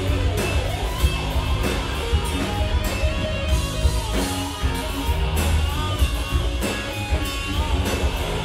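Rock band playing live: a Les Paul-style electric guitar plays a lead line over drums and bass, with a few bent notes near the end.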